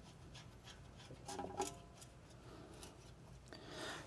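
Lug nuts being spun by hand onto wheel studs to hold a steel toe plate against the brake rotor: faint metallic clicks and scraping, with a brief slightly louder metal clink about one and a half seconds in.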